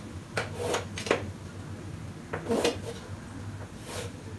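Chalk drawing on a blackboard along a set square: several short scratchy strokes, with a low steady hum underneath.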